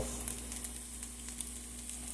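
Diced onions and red peppers frying in olive oil in a pan, browning: a steady, low sizzling hiss with scattered small pops.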